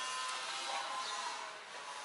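A faint, steady mechanical whine made of several high steady tones over a hiss, easing off slightly near the end.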